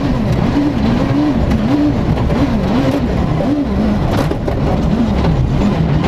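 Rally car engine heard from inside the cabin, its revs rising and falling quickly, about one and a half times a second, as the throttle is worked through a tight junction on a loose dirt stage, over a steady rumble of tyres and gravel. A sharp knock comes about four seconds in.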